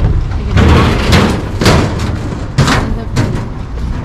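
Wind buffeting the camera microphone: a steady low rumble broken by several sharp thumps.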